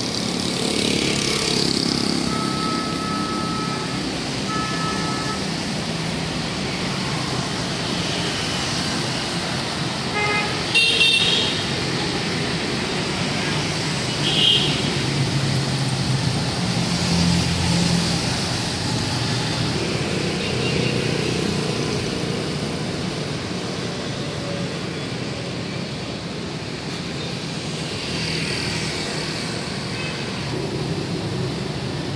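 Street traffic of motorbikes and scooters with a few cars, engines and tyres swelling as they pass on the wet road, with a few short horn toots, the loudest about eleven seconds in.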